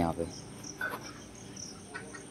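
Insects chirping in the background: short high chirps repeating irregularly over a thin, steady high whine.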